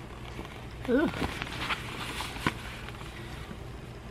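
Light rustling and scratching of fabric handled close to the microphone as a finger rubs over embroidered stitching, with one sharp click about halfway through, over a low steady hum.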